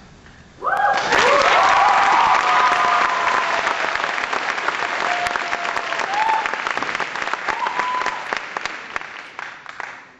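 School-auditorium audience breaking into loud applause and high-pitched cheering all at once, about half a second in. The clapping holds steady with scattered whoops and fades away near the end.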